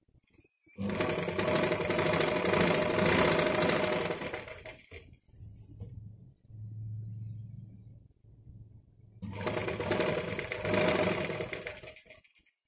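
Domestic sewing machine stitching through fabric in two runs, the first about four seconds long and the second about two and a half, with the machine running more quietly in between.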